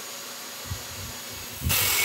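Electric angle grinder with a cutting disc: a low steady running sound, then near the end the disc bites into the steel angle bar and a loud, harsh cutting noise suddenly starts as sparks fly.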